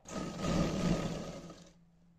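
Electric sewing machine running a short line of stitching along the seam of a suit, for about a second and a half before stopping.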